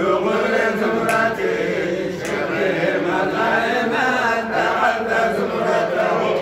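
Men chanting a Sufi zikr (Hamallist kassida), unaccompanied, in one continuous melodic line.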